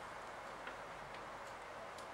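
Dry-erase marker writing on a whiteboard: a few faint short ticks and squeaks as the strokes are drawn, over a faint steady background hum.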